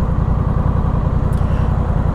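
Honda Rebel 1100's parallel-twin engine idling steadily while the bike waits at a standstill.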